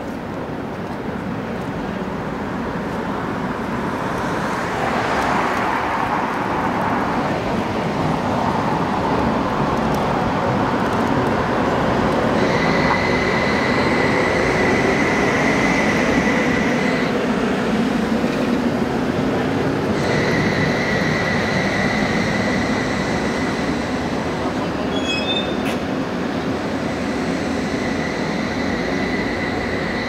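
Tatra T3R.PLF tram passing close by on its rails. Its rolling rumble builds to a peak in the middle. A steady high whine comes in partway through, breaks off for a few seconds, then returns.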